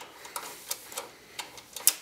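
Several light, irregular clicks and taps of hands handling a small graphics card and its metal bracket at the back of a computer case, the sharpest click near the end.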